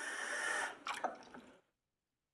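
Water running from a tap, stopping about a second and a half in as the tap is shut off.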